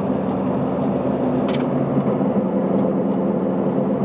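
Goggomobil's air-cooled two-stroke twin-cylinder engine running at a steady speed on the move, over road noise. A short click comes about a second and a half in.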